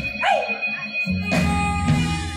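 Live band, with electric guitar, drums and keyboards, playing through the PA. The band drops out for about a second near the start, a short high cry that falls in pitch sounds in the gap, and the full band comes back in a little over a second in.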